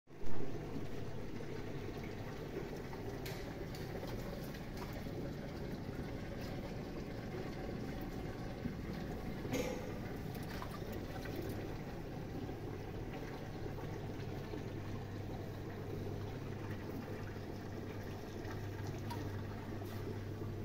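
Aquarium filter running: a steady trickle of water falling into the tank over a low, even hum. A brief thump right at the start and a few faint clicks.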